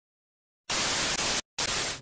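Static hiss added in editing: silence, then two short bursts of even white noise that start and stop abruptly, split by a brief gap.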